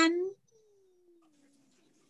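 A high, drawn-out voice ends a word just at the start, followed by a faint hum gliding slowly downward for about a second.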